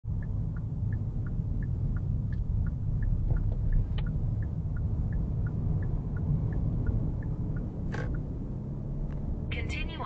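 Car turn-signal indicator ticking in an even tick-tock, about three ticks a second, over the low rumble of the engine and tyres during a left turn; the ticking stops near the end as the turn is finished.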